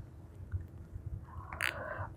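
Quiet room with faint handling noise as a baby doll is moved on a lap, and one short click about one and a half seconds in.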